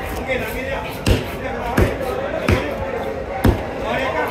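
A heavy, curved fish-cutting knife chopping through fish onto a wooden cutting board, four sharp thuds about three-quarters of a second apart. Voices chatter in the background.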